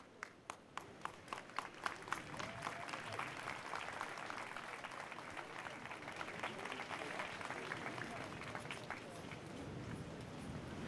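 Audience applauding: a few separate claps at first, building within about three seconds into steady, faint applause, with a few crowd voices mixed in.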